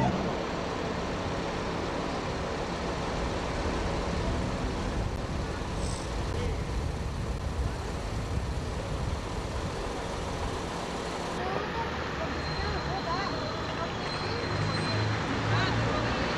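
Steady city street traffic noise, with indistinct voices in the last few seconds.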